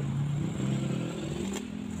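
A low, steady engine drone from a vehicle, rising slightly in pitch about a second in.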